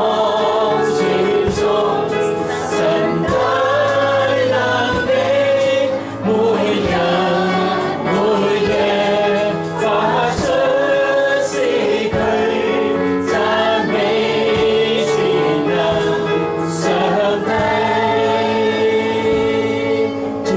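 A man singing a worship song to electronic keyboard accompaniment, the melody weaving over long held chords.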